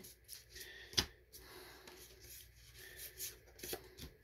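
Faint handling of Magic: The Gathering cards: cards flicked through and slid against each other by hand, a soft rustle with scattered light clicks and one sharper click about a second in.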